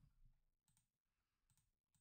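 Near silence, with a few faint clicks of a computer mouse.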